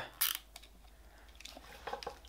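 Faint handling noises of a nylon zip tie being threaded through its own head around a rubber regulator mouthpiece. There is one short, sharp rustle just after the start, then small scattered clicks and rubs.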